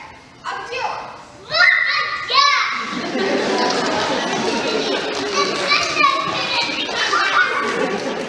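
Children's voices on stage: a few high, rising calls, then from about three seconds in many children talking and calling out all at once, echoing in a large hall.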